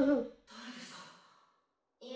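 The tail of a spoken word, then a short breathy sigh with a faint voiced note.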